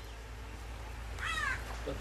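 A single short animal call, most likely a bird, about a second and a quarter in; it arches up and back down over a low steady hum.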